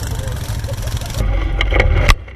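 ATV engines running at idle. About a second in the sound changes abruptly to a louder, closer engine rumble with a few sharp clicks.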